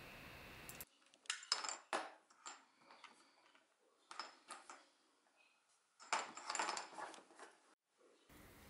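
Light clicks and clatter of hard plastic as a DJI Mavic Pro remote controller and its small pried-off covers are handled and set down. The sounds come in three short flurries: about a second in, around four seconds, and from about six seconds to near the end.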